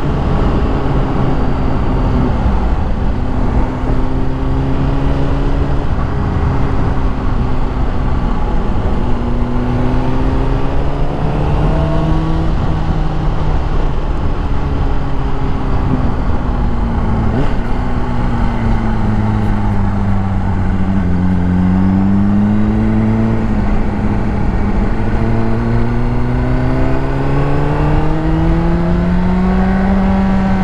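2005 Honda CBR600RR's inline-four engine running through a decatted Yoshimura exhaust while the bike is ridden, its revs rising and falling through the bends. The pitch sinks lowest about two-thirds of the way through, then climbs steadily near the end.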